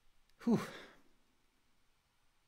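A man's single exasperated sigh, a breathy "puh" about half a second in, falling in pitch and lasting about half a second.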